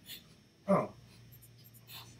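Faint computer keyboard typing, a few light key clicks, over a steady low electrical hum.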